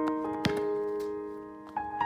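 Soft piano background music: single notes struck a few at a time and left to ring and fade, a new note sounding near the end. A sharp tap comes about half a second in.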